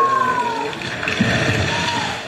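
A played-in stage sound cue: a whistling tone that swoops up and falls away, then returns near the end, over a dense rushing wash, with a low rumble about a second in.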